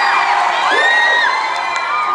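Concert crowd of young fans cheering, with several long, high-pitched screams overlapping one another.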